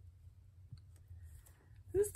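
A few faint clicks of a stylus tip tapping on an iPad's glass screen, over a low steady hum.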